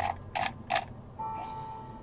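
Computer mouse clicking: three sharp clicks about a third of a second apart. A faint steady hum follows.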